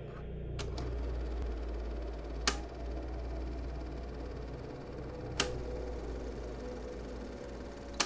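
Steady low hum with a faint rapid ticking texture, broken by two sharp clicks about three seconds apart.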